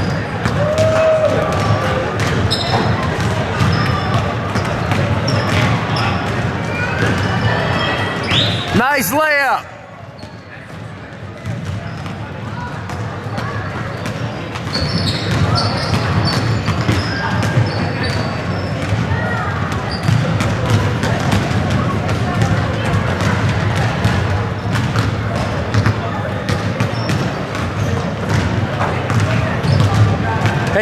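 Basketballs being dribbled and bounced on a wooden gym floor, with irregular hard bounces echoing in the hall over a background of voices. The overall sound drops suddenly about ten seconds in and builds back gradually.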